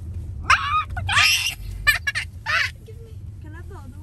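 Young girls' high-pitched excited voices, squealing and exclaiming in short outbursts about half a second in, just after a second and at two and a half seconds, over the steady low rumble of a car cabin.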